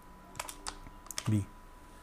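Computer keyboard typing: a quick run of several key clicks within about a second as a short word is keyed in.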